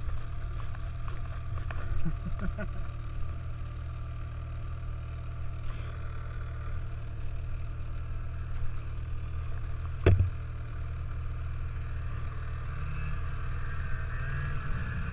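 Snowmobile engine running steadily at low throttle while the sled moves over snow, with a few light knocks and one sharp thump about ten seconds in.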